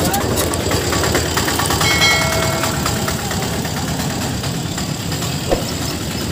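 Street traffic at close range: small engines of motor scooters and an auto-rickshaw running as they pass, with a short high-pitched tone about two seconds in and a brief knock near the end.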